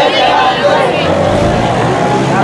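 Many voices of a crowd walking in procession, overlapping, over a low steady rumble.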